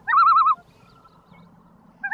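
A short, high, whistle-like warble: a quick upward swoop that breaks into a fast wavering trill for about half a second at the start, then stops.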